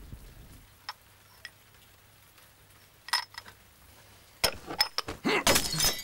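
Porcelain lid of a lidded tea cup (gaiwan) clinking against the cup, a few separate light, ringing clinks. Near the end comes a quicker, louder run of knocks and clatter.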